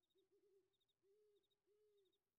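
Cartoon owl hooting faintly in a series of low hoots, a few quick ones followed by two longer, drawn-out ones, with faint high chirps in threes repeating behind it as night ambience.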